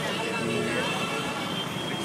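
Busy street traffic: a mix of running vehicles as one steady wash of noise, with several steady tones on top and voices mixed in.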